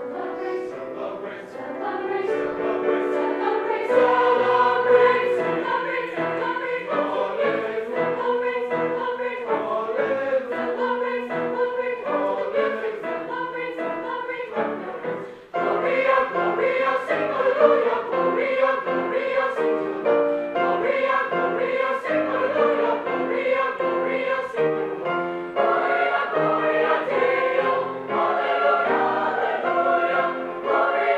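Mixed choir of young male and female voices singing a choral piece with piano accompaniment. The sound drops away abruptly for a moment about halfway through, then the choir and piano carry on.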